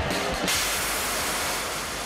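Cold Cut Cobra cutting extinguisher's high-pressure water-and-abrasive jet piercing a wall and spraying into a burning room: a loud steady hiss that starts suddenly and grows stronger and brighter about half a second in.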